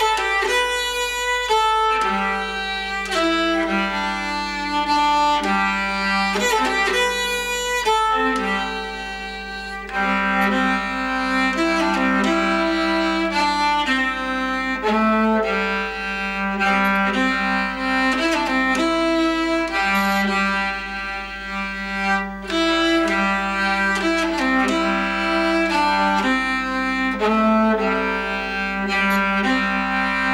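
Nyckelharpa (Swedish keyed fiddle) played with a bow: a folk tune of changing melody notes over a sustained low drone.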